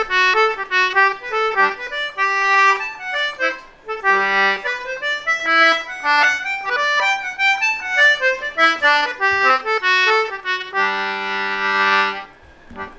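Anglo concertina, a 30-button type that gives a different note on the push and the pull of the bellows, playing a quick tune of short notes. There is a brief break about four seconds in, and the tune ends on a held chord.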